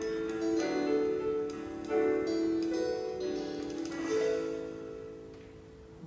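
Recorded instrumental music playing from a portable stereo: the closing bars after the singing, a few held notes at a time, fading out over the last couple of seconds.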